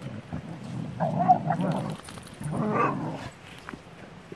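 Pit bulls tussling in rough play, with two loud dog growls: one about a second in and one at about two and a half seconds.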